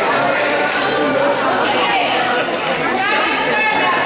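Many people talking at once in a gymnasium: steady overlapping chatter from spectators and players, echoing in the hall, with no single voice standing out.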